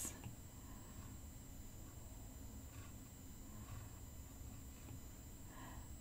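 Near silence: faint room tone with a steady high-pitched whine, and a few soft strokes of an Apple Pencil tip on the iPad's glass screen about halfway through.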